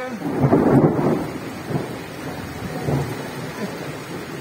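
A peal of thunder rumbling: it swells about half a second in, is loudest around the first second, then rolls on more quietly. Rain is falling throughout.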